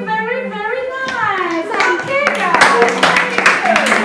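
A child's voice gliding up and down in pitch, then a group of children clapping their hands from about halfway through, with voices over the clapping.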